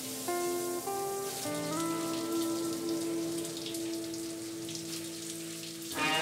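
Shower head spraying water, a steady hiss, under background music of long held notes.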